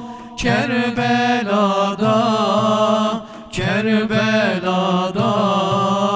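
Male vocal group singing a slow Turkish ilahi, a Kerbela lament for Imam Hüseyin, in long melismatic phrases on a wordless vowel, with frame drums (def) in the ensemble. Two new phrases begin, about half a second in and at about three and a half seconds.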